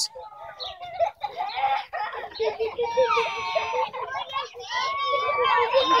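Several children's voices talking and calling out at once, overlapping, with some high voices sliding up and down in pitch.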